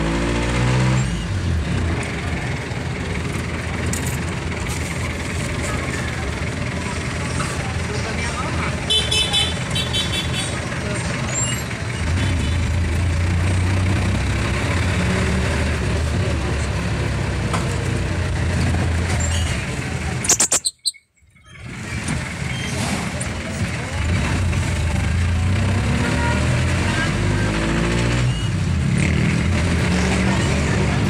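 Engine and road noise heard from inside a moving jeepney in city traffic, with a short run of horn toots about nine seconds in. The sound cuts out briefly for about a second two-thirds of the way through.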